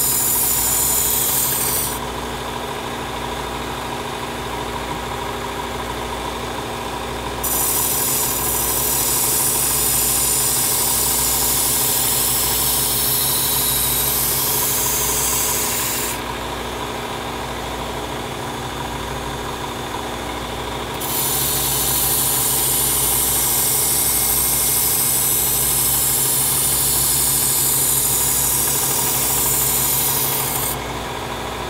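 Work Sharp Ken Onion Elite belt knife sharpener running at low speed while a chef's knife is reprofiled on its abrasive belt. The blade grinds against the belt in three spells of hissing, and between them are two gaps of about five seconds where only the motor hums steadily.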